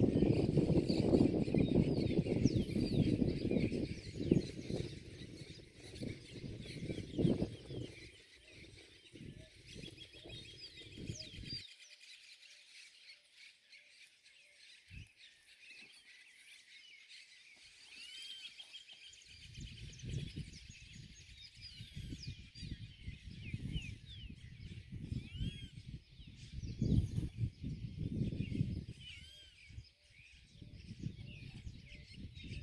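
Several birds chirping and calling throughout, with many short rising and falling whistled notes. A low rumbling noise comes and goes: loudest at the start, dropping away for a stretch in the middle, and back again later.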